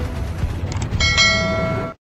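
Outro music with a low beat, then a bright bell chime struck about a second in and again a moment later, ringing on until the audio cuts off just before the end.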